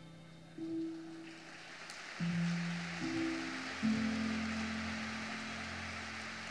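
Soft background music of slow, held notes that change every second or so. From about a second in, a faint, even rustling hiss lies underneath.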